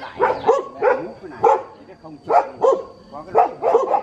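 A dog barking repeatedly: about ten short barks at uneven intervals.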